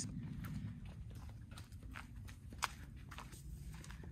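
Faint footsteps on a concrete driveway, a light tap or scuff about every half second, over a low steady rumble.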